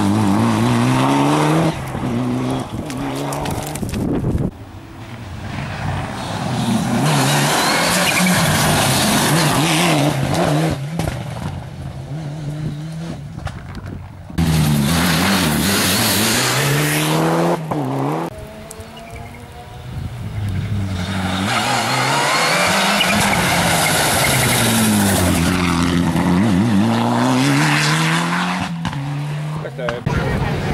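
Mitsubishi Lancer Evolution rally car's turbocharged four-cylinder engine revving hard past at close range, its pitch climbing and dropping again and again through gear changes. The sound comes in several separate passes, cut off abruptly between them.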